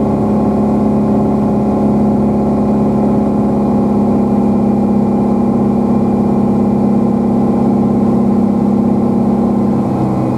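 Small aircraft's engine and propeller droning steadily in the cockpit as it comes in low over the runway to land: a loud, even hum with a strong low tone.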